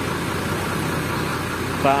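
Rear-mounted diesel engine of a Hino RK8 coach idling steadily.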